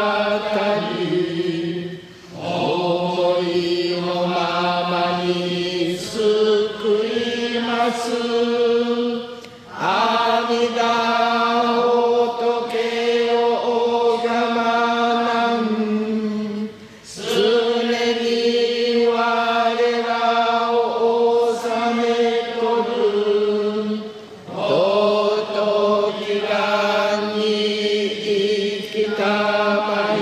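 Buddhist liturgical chanting of a Jodo Shinshu service, voices holding long sustained notes that step between pitches. The phrases last about seven seconds, each followed by a short pause for breath.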